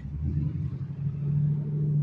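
An engine running, a low steady hum.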